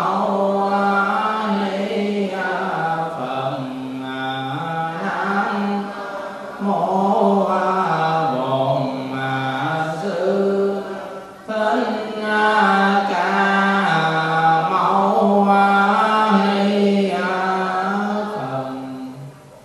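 A Buddhist monk chanting a slow invocation into a microphone, one male voice holding long notes that step up and down in pitch, with a short break for breath about two-thirds of the way through.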